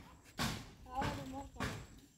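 Faint voices of people talking, with three soft thuds about half a second apart.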